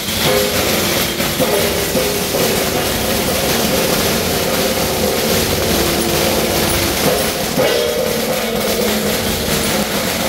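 A long string of firecrackers going off in a continuous dense crackle that starts suddenly, with steady pitched tones held underneath.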